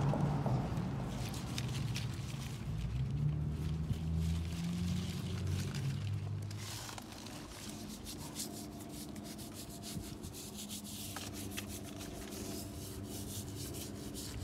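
Paintbrush bristles rubbing wet white paint onto a young avocado tree's trunk and branches in repeated gentle strokes, a soft brushing and scraping.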